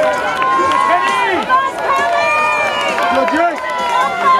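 Spectators shouting encouragement at passing runners, several voices overlapping in long, loud calls.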